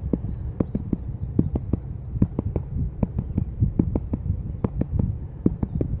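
Rapid light tapping on a plastic gold pan holding water and sand, about four uneven knocks a second. This is the tap-and-wash step, meant to make the gold walk upward in the pan and the lighter material walk downward.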